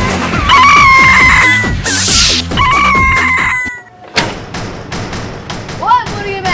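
A rooster crowing twice, each crow a long held call that falls at the end, over background music, with a whoosh between the crows. A sharp knock comes about four seconds in.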